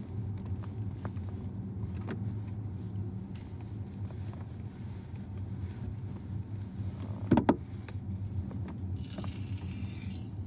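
Steady low road and engine drone heard from inside a moving car's cabin. A single sharp knock comes about seven seconds in, and a brief hiss follows near the end.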